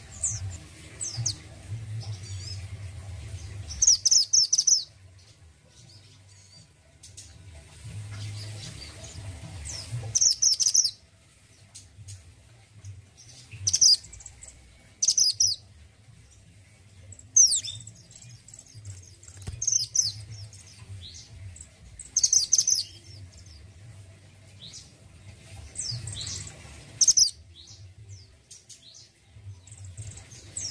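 A caged mantenan gunung (a minivet) calling in short bursts of high, sharp chirps and quick down-slurred whistles, repeated every few seconds.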